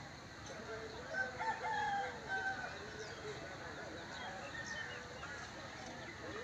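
A rooster crowing once, about a second in: a pitched call of several held syllables lasting about a second and a half.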